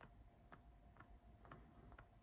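Near silence: room tone with faint, light ticks about twice a second.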